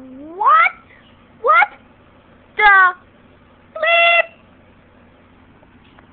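A voice making four short pitched calls about a second apart. The first two sweep upward, the third dips slightly and the last is held level.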